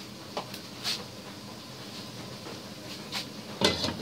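Steady low hiss of water boiling in the bottom pot of a stainless steel steamer, with a few faint clicks. A short clatter near the end as the glass lid is set on the steamer.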